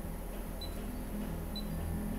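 Two short high beeps about a second apart: the key-click tones of a MAST Touch tattoo power supply's touchscreen as menu settings are pressed. Faint steady background music runs underneath.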